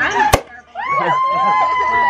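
A sparkling-wine bottle's cork pops once, sharply, then a woman lets out a long, high-pitched whoop, with other voices cheering around it.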